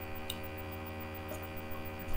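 Steady electrical mains hum, with one faint click about a third of a second in.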